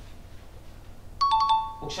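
Smartphone message notification chime: a quick run of short electronic beeps a little over a second in, the last tone held briefly, signalling an incoming direct message.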